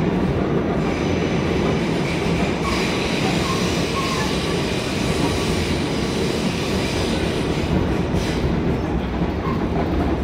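Inside an R46 New York subway car running at speed through a tunnel: a steady, loud rumble of wheels on rail and the car's running gear.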